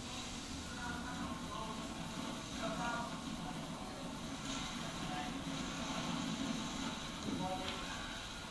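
Faint, indistinct voices in short snatches over a steady low rumble.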